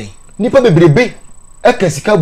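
A man talking in short, animated phrases, over a faint, steady, high-pitched whine.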